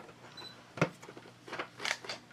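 Quiet handling of Easter candy packaging: one sharp tap about a second in, then a short rustle near the end.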